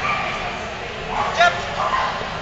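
A small dog barking in short, high yips as it runs an agility course.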